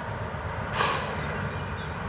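A short breath or sniff close to the microphone, a little under a second in, over a steady background hiss.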